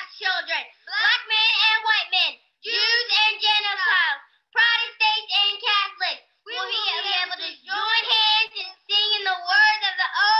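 A group of young children's voices in unison, in phrases of a second or two with short breaks between them.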